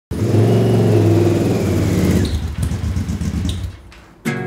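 Motorcycle engine running loudly at a steady pitch, then falling back about halfway through and dying away near the end.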